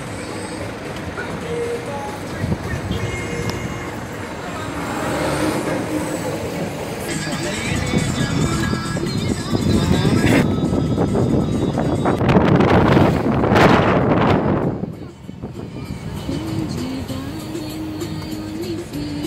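Road noise of a moving car, heard from inside, with music playing. The noise swells to its loudest about ten to fourteen seconds in, then drops off sharply.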